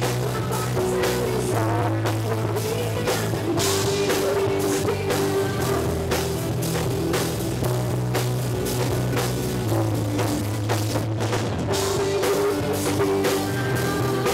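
Live rock band playing an instrumental passage: electric guitar through a Marshall amplifier over bass and a drum kit, with no vocals.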